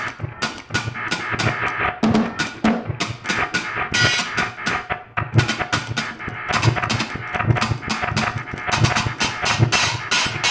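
Free improvisation for drum kit and live electronics: dense, irregular flurries of drum hits, along with sampled and processed sounds played from a monome grid and norns.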